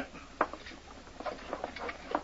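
Radio-drama sound effects of a revolver being taken from a man: a sharp tap about half a second in, then a run of light clicks and taps as the gun is handled.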